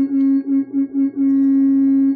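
Car horn honking to signal another car: a quick run of about five short toots, then one long blast from about a second in, over a low running-engine hum. An old-time radio sound effect.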